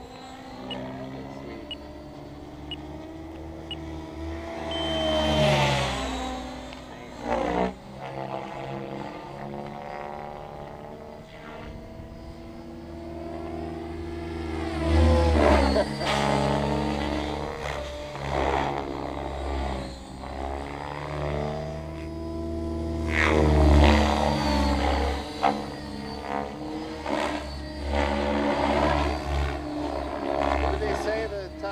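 Thunder Tiger Raptor E700 electric RC helicopter in flight: its motor and main rotor whine, rising and falling in pitch as head speed and blade pitch change. It swells louder three times, a few seconds in, about halfway and about three quarters through.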